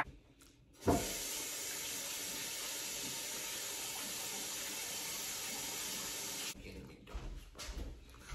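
Kitchen sink tap running in a steady stream, turned on about a second in and shut off about six and a half seconds in.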